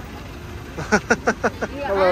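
A woman laughing in a quick run of about six short, slightly falling bursts, over a low steady hum.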